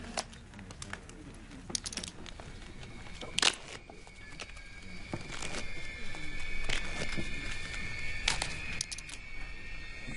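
Film soundtrack of a poker table: scattered clicks of poker chips over a faint murmur of voices. A high held note of suspense music comes in about three seconds in and grows louder.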